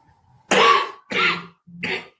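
A person coughing three times in quick succession, short separate bursts close together.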